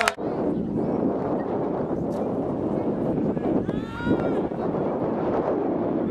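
Steady outdoor rushing noise on the camera microphone, with a single distant shout about four seconds in.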